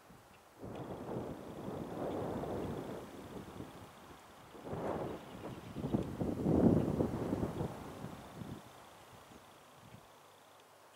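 Wind gusting on the microphone in two rushes, the first starting suddenly about half a second in, the second and louder one swelling past the middle and dying away near the end.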